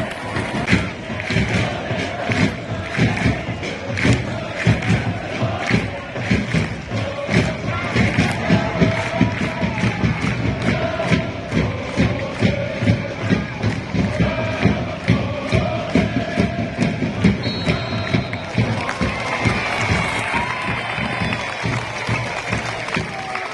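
Football supporters chanting together in the stands to a steady drum beat, about two to three beats a second.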